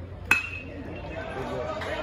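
Metal baseball bat hitting a pitched ball: one sharp ping with a brief ringing tone, about a third of a second in, followed by spectators' voices rising.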